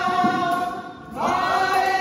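A group of men singing a devotional song together in long held notes. The voices fall away briefly about a second in, then come back in on a rising note.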